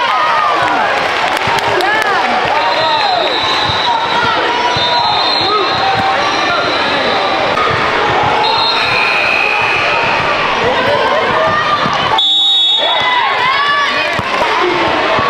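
Live indoor basketball game sound: basketball sneakers squeaking on the hardwood court again and again, the ball bouncing, and a steady murmur of players' and spectators' voices in a reverberant gym.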